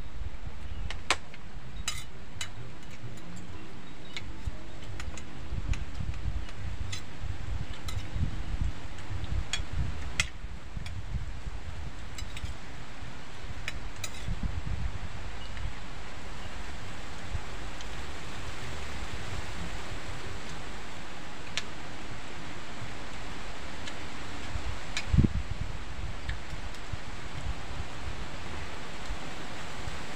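Metal spoons clicking against plates as two people eat, over a steady low wind rumble on the microphone. The clicks come often in the first half and then only now and then, with one louder knock about 25 seconds in.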